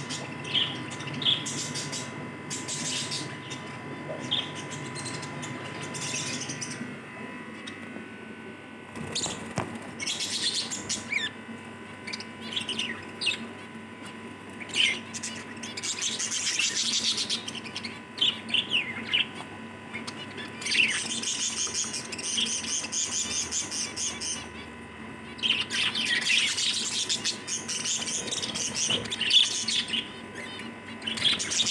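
Small birds chirping on and off, short quick calls that slide up and down in pitch, busiest in the second half.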